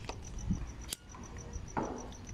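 A cricket chirping, a rapid even train of high chirps about six a second. A sharp click from the phone being handled comes a little before the middle.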